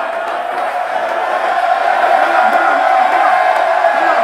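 Crowd shouting and cheering, many voices at once, getting a little louder about a second and a half in.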